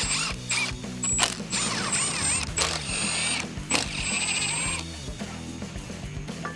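Cordless impact driver with a Torx bit spinning out bolts, its high whine wavering up and down in pitch for a few seconds from about a second and a half in, with a few sharp clicks, over background music.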